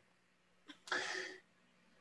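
A single short, breathy vocal burst from a person about a second in, like a sneeze or sharp exhalation, with near silence around it.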